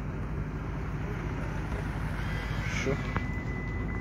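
Steady low rumble of street background noise, with a thin steady high whine that comes in a little after halfway and a single click shortly after.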